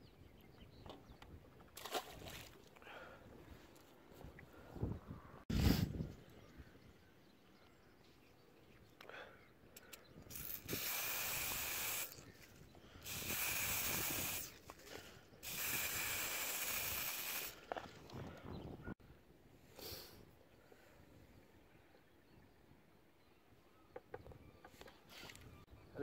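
Aerosol can of bait attractant sprayed in three hissing bursts, each one to two seconds long, onto a pellet-loaded method feeder. Earlier there are a few handling knocks, the loudest about five seconds in.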